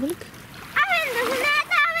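A child's high-pitched voice calling out, rising and falling in pitch, over water splashing and small waves lapping on a sandy shore.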